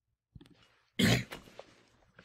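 A person coughs once, loud and sudden, about a second in. A faint click comes just before it.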